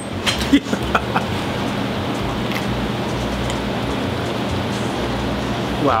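Steady background noise of a working pizzeria kitchen, with a few light knocks in the first second.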